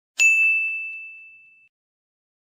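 A single bright, bell-like chime struck once, ringing out and fading over about a second and a half.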